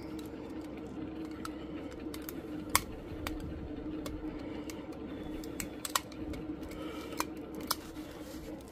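Small motorized display turntable running with a steady low hum, with scattered light clicks and ticks; the sharpest come a little under three seconds in and again near six seconds.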